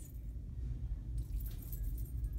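Faint light metallic jingling in the second half, over a steady low rumble.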